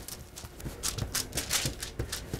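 Fingertips and palms patting and pressing bread dough flat on parchment paper over a wooden table: a run of soft, irregular pats, several a second.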